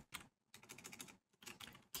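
Faint typing on a computer keyboard: short runs of quick keystrokes with brief pauses.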